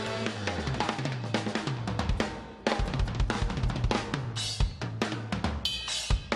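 Live rock band with the drum kit to the fore: rapid kick, snare and cymbal hits in a busy drum fill over electric guitar and bass, with a loud hit and ringing cymbal near the end.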